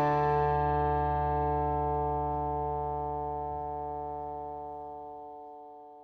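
Closing music: a single guitar chord, struck just before, rings on and fades slowly away.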